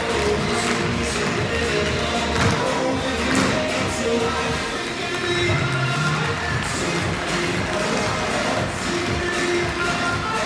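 Recorded music playing, with a group of dancers' tap shoes clicking on a hard studio floor in time with it.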